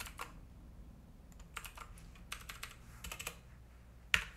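Typing on a computer keyboard: a few short runs of quiet keystrokes with pauses between them.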